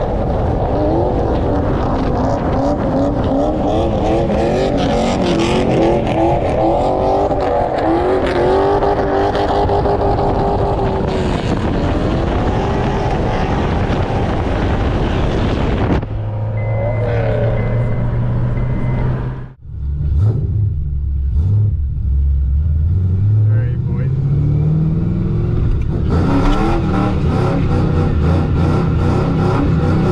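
Car engine running hard as the car slides through turns, with wavering tire squeal over it in the first half. After a cut, the engine holds a steady note, then its revs climb under acceleration before another cut.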